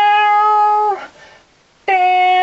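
A voice singing a long held 'whoa' on one steady pitch, cutting off about a second in. After a short pause, a second held note begins near the end, sliding down slightly into its pitch.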